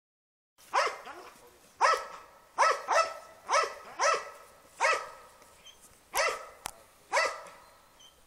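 A Belgian Malinois barking: about nine sharp, loud barks in an irregular rhythm, each dropping in pitch, with a single sharp click between two of them.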